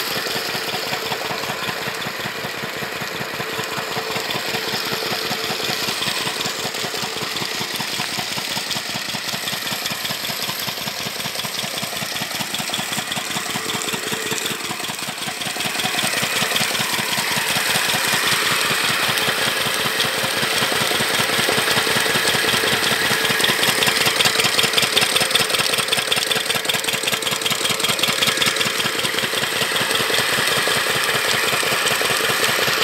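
Single-cylinder stationary diesel engine running steadily with a fast, even chug while it belt-drives a borewell turbine pump. Water gushes from the pump's outlet pipe. The engine gets louder from about halfway through.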